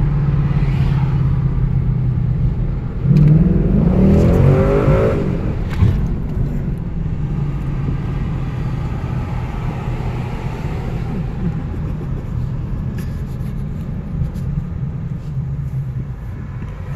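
2017 Ford Mustang's engine heard from inside the cabin, running steadily while cruising at low speed. About three seconds in it revs up briefly, rising in pitch for a couple of seconds, then settles back to a steady hum.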